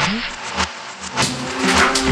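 Sound effects for animated on-screen text: a low rising swoosh at the start and a sharp click, then electronic music with drums coming in a little over a second in.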